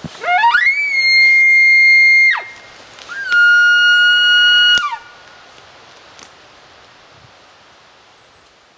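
Hand-blown maral bugle call imitating a rutting stag's bugle: two long whistling calls, the first climbing steeply to a high held note, the second held at a lower pitch, each ending in a sharp downward drop.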